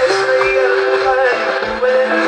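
Live band music: a man sings a wavering, ornamented melody into a microphone over sustained keyboard, bass guitar and a steady drum beat.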